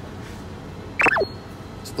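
A short high whistle-like tone about a second in, gliding steeply down in pitch, over faint steady background noise.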